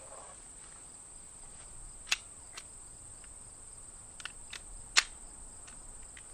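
Crickets chirring steadily in a high, even band. A few sharp clicks from the 9mm Hi-Point C9 pistol being handled before firing fall over it, the loudest about five seconds in.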